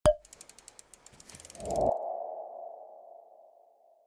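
Synthesized logo sound effect: a sharp hit, a quick run of ticks, then a swell into a single ringing tone that slowly fades away.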